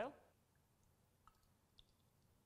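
Near silence with two faint small clicks, about a second and a quarter in and again half a second later.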